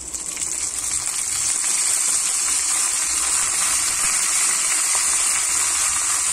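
Curry leaves and a dried red chilli sizzling in hot oil in a small iron tempering pan. The sizzle swells over the first second as the leaves go in, then holds steady.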